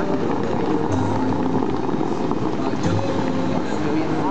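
Show fountain water jets shooting up and falling back in a steady rushing spray, with music from the show playing faintly underneath.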